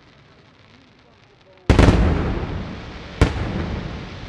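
Aerial firework shells bursting: faint crackling, then a loud bang a little under halfway through that rumbles and echoes away, and a second sharp bang about a second and a half later.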